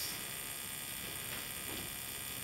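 Steady background hum and hiss with no change; the Tesla coil is not yet firing.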